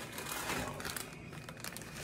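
Clear plastic bag crinkling as it is picked up and handled, a run of small crackles.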